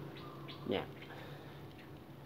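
Quiet garden background: a steady low hum with a few faint, brief bird chirps, and one short spoken word about two-thirds of a second in.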